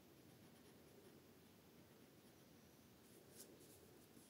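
Near silence with the faint scratching of a colouring pen stroking over paper, one brief louder stroke about three and a half seconds in.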